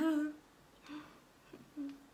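A woman's short closed-mouth hums ("mm"): one at the start trailing off from her laughter and another brief one near the end, with a faint breath between.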